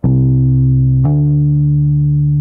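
Electric bass guitar demonstrating a hammer-on: one plucked note, then about a second in a fretting finger hammers onto a higher fret and the pitch steps up to a higher note on the same string without a second pluck. The second note rings on steadily.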